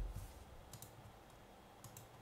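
A few faint clicks of a computer mouse operating software, over a quiet room background.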